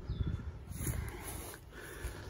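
Faint outdoor background: a low rumble with a short faint chirp at the very start.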